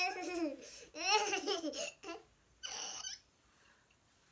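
A toddler's high-pitched laughter and babbling, in three short bursts of wavering pitch over the first three seconds.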